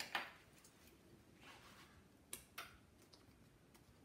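Near silence with a few faint, sharp clicks and a soft rustle as a metal binder clip is handled and fitted onto the edge of a stack of paper, two clicks close together about two and a half seconds in.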